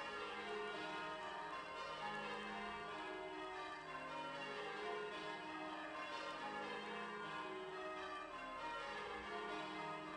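Church bells ringing, struck one after another so that their tones overlap and ring on.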